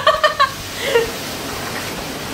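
A short burst of laughter at the start, then the steady hiss of a heavy downpour of rain.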